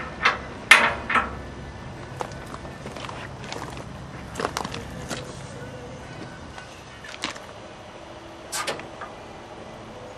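A dozen or so light knocks and clicks at uneven intervals over a low steady background, most of them in the first second and near the end.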